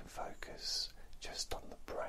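A man whispering in short phrases, with a sharp hiss on a sibilant about halfway through.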